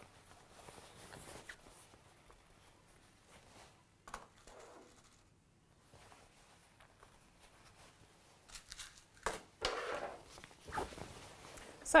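Cotton fabric rustling faintly as a jacket is handled and pinned, with louder rustling near the end as the garment is gathered up.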